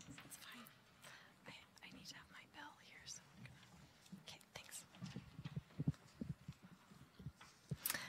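Faint murmured talk with scattered soft knocks and bumps as microphone stands and instruments are handled on stage, mostly in the second half.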